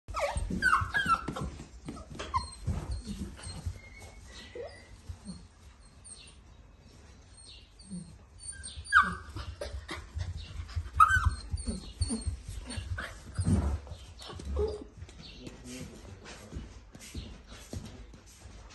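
Golden retriever puppy giving short, high whines and yips that slide in pitch, a cluster near the start and more around the middle, amid frequent rustles and knocks.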